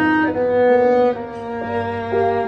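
Violin playing a slow swing melody: a few long bowed notes that change pitch several times.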